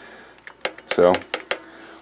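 M-Audio SP-2 sustain pedal handled in the hands, giving about five sharp clicks and taps in quick succession.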